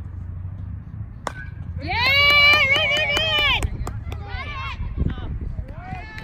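A baseball bat hitting the ball: one sharp hit with a brief ring, followed about half a second later by a loud, long, high-pitched yell from the crowd.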